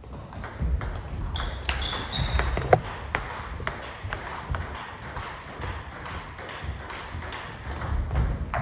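Table tennis ball clicking off rackets and the table in quick succession, about three sharp clicks a second.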